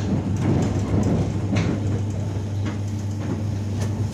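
Running noise heard from inside a moving passenger train: a steady low hum and rumble of the wheels on the rails, broken by several sharp knocks at uneven intervals.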